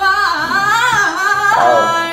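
A woman singing a soulful ballad with a long melismatic run, her pitch sliding up and down before she holds a note near the end, over quiet accompaniment.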